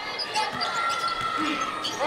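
Basketball being dribbled on a hardwood court in an arena, with short squeaks from players' shoes and crowd voices in the background.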